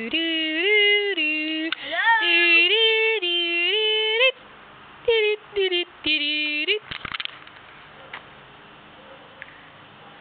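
A child's high voice singing wordless notes, holding each one and jumping up and down in pitch, for about four seconds, then three short sung snatches that end about seven seconds in.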